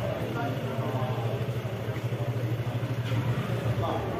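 Vehicle engine idling steadily, a low even hum, with voices of people nearby.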